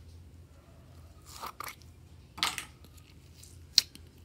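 Small plastic slime tub being opened by hand: crinkly, crackling plastic sounds about a second in and again halfway through, then one sharp click near the end as the lid comes free.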